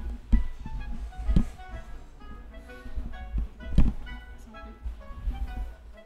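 A person jumping and landing on the floor, giving a few dull thuds, the loudest about four seconds in, over background music.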